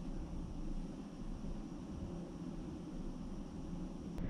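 Steady low room rumble with a faint even hiss, the background noise of a spray booth. No distinct sound comes from the hand work on the tape.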